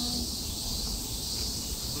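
Steady, high-pitched chirring of night insects, with a low rumble underneath.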